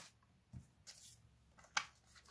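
A few faint, short rustles and taps of paper being handled on the board, as the next question sheet is got ready.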